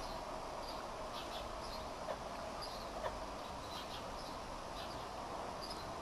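Steady outdoor background hum with faint, scattered high chirps and two light knocks about two and three seconds in.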